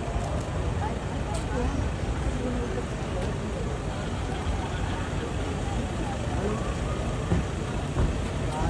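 Steady low rumble of idling car engines, with faint scattered voices over it and a single short knock near the end.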